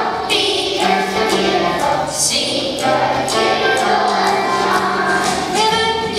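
A large group of kindergarten children singing together as a choir.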